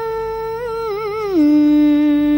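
A woman's voice singing in cải lương style, drawing out one long held note that slides down to a lower held note about two-thirds of the way through.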